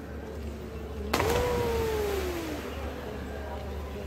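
A person jumping into the cenote hits the water about a second in with a sudden splash, and the splash noise lingers for a couple of seconds. At the same moment one long falling 'ooh' of a voice rises out of it.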